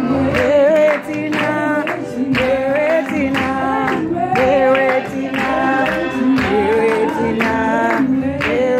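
A woman sings a gospel song solo into a microphone through the hall's PA, her voice sliding between held notes, over a steady low instrumental backing.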